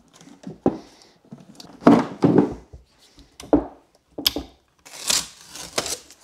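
A battery management board glued to lithium iron phosphate cells being pulled free: the adhesive foam pad tears away in several short rips and rustles, with handling noise between them. The adhesive holds well and the board comes off only with effort.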